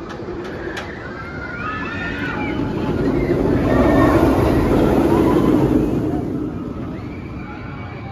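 A Banshee inverted roller coaster train (Bolliger & Mabillard) passes close overhead: its rumble swells to a peak about halfway through and then fades. Riders scream early on and again near the end.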